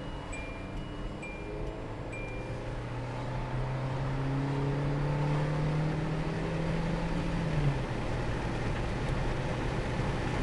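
A 2008 Hyundai Accent's 1.6-litre four-cylinder engine, heard from inside the cabin, climbs steadily in pitch as the car accelerates. About three-quarters of the way through the pitch drops suddenly as the automatic transmission shifts up. A few short chime beeps sound in the first couple of seconds.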